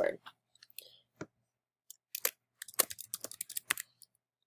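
Typing on a computer keyboard: irregular short keystroke clicks, a few spaced out early on and a quicker run in the second half, as a password is entered.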